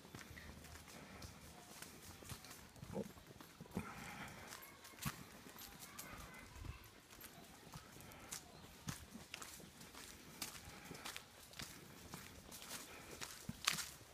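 Steps of a walk on a paved path scattered with dry leaves: irregular soft clicks and scuffs, one or two a second, with a louder knock near the end.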